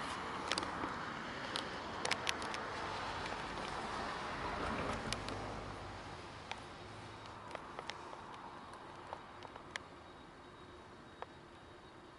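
Faint outdoor background hiss and rumble that fades away over the first half, with scattered small clicks.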